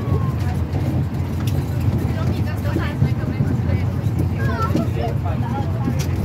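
Faint voices over a steady low rumble.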